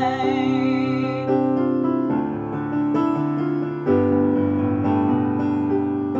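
Digital keyboard playing piano chords, with a woman's sung note held with vibrato that ends about a second in. After that the keyboard plays on alone.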